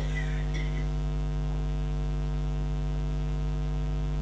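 Steady electrical mains hum from the sound system: a low buzz with a stack of even overtones that holds unchanged throughout.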